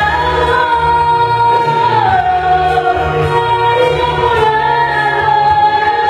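A woman singing long held notes over instrumental accompaniment, the melody stepping down in pitch about two seconds in.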